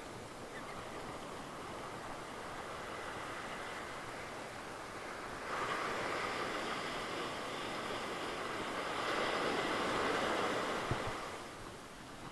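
Surf washing up on a sandy beach. It grows louder about halfway through, is strongest a few seconds later, then eases off near the end.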